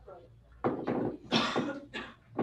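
A person coughing: two loud, rough coughs about a second in.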